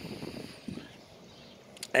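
Faint outdoor background noise with no distinct source. A couple of short clicks come just before a man's voice starts at the very end.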